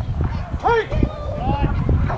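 Voices shouting drawn-out calls from the field and stands during a youth baseball game, one about two-thirds of a second in and another near the end, over a steady low rumble.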